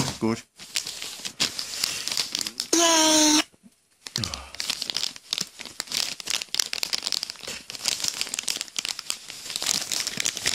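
Paper packaging crinkling and rustling as it is handled and pulled apart by hand. About three seconds in, a loud, steady pitched tone lasts about half a second, followed by a brief silence before the crinkling resumes.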